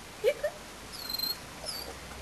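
A dog gives two short, quick yips, followed by two high, thin squeaks, the first about a second in and the second near the end.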